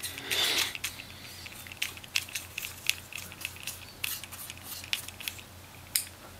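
A small brush scrubbing dust off a MacBook Pro's cooling fan and heatsink: a burst of scratchy bristle noise near the start, then many short scratches and clicks as the brush works over the fan.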